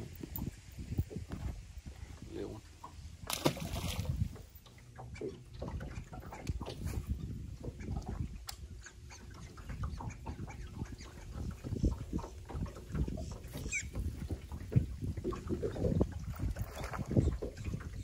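Wind rumbling on the microphone over open water, with scattered light knocks and clicks of handling aboard a small aluminium boat. A brief hiss comes about three seconds in, and a short high gliding squeak near the end.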